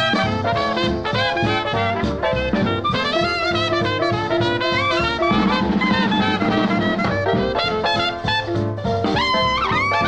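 Instrumental passage of a vintage swing-era dance-band recording, with a steady rhythm, a held low note in the middle and a phrase of sliding notes near the end.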